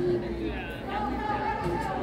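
Indistinct chatter of several voices in a large hall, over a steady low hum.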